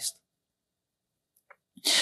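Near silence in a pause in a man's speech: the tail of a word at the start, a faint click about one and a half seconds in, then a short breath just before he speaks again.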